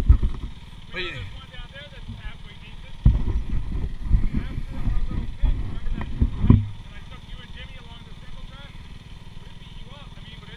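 Dirt bike engines idling with a steady low pulsing, with heavier low rumbling near the start and again from about 3 to 6.5 seconds in. Faint muffled voices come through over the engines.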